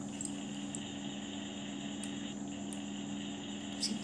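Quiet room tone: a steady low electrical hum with a faint hiss that comes in just after the start, and a few faint ticks.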